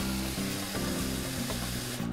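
Hot tap water running steadily from a kitchen faucet into a glass measuring cup, under background music.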